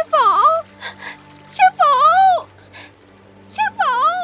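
A boy's voice crying out three times in long, wailing calls whose pitch swoops up and down, calling for his master ("sư phụ"), over faint steady background music.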